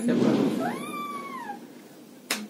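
A single high, meow-like cry about a second long, rising and then falling in pitch, after a brief rush of noise at the start.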